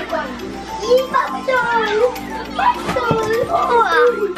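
A small child's voice exclaiming, over steady background music.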